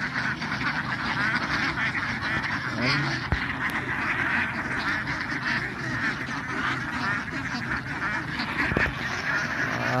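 A large flock of domestic ducks quacking continuously, many calls overlapping into a steady chatter.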